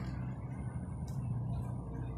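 A steady low rumble, like vehicle traffic, with a few faint short ticks over it.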